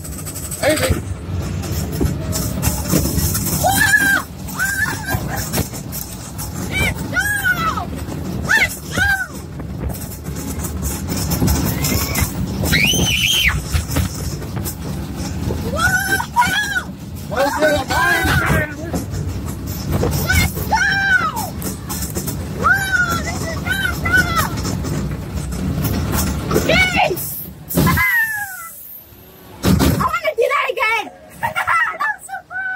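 Riders screaming and whooping on a moving roller coaster, short rising-and-falling cries every couple of seconds over a steady rush of wind and ride rumble.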